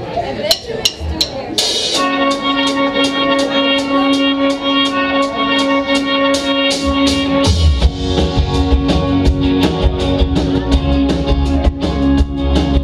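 Live indie rock band starting a song: a ticking count-in of about three clicks a second, then a held chord rings over steady hi-hat ticks, and the bass and kick drum come in about seven and a half seconds in.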